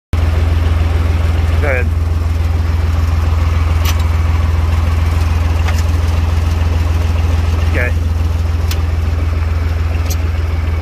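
Deutz Allis 6250 tractor's diesel engine idling steadily, with a few sharp ticks.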